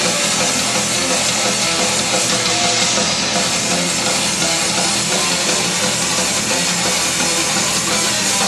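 Melodic death metal band playing live: distorted electric guitars over a drum kit, dense and steady in loudness.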